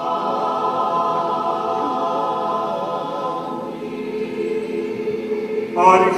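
Choir singing an Orthodox liturgical chant in long held chords. A louder new phrase comes in near the end.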